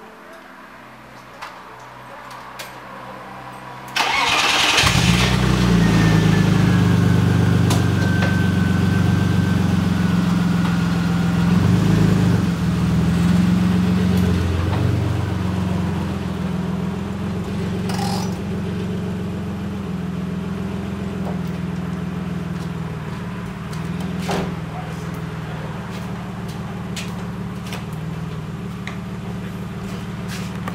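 BMW E36's engine starting about four seconds in, then running steadily while the car is moved slowly out of the garage. The exhaust has a muffler from an E46 welded on in place of the straight pipe.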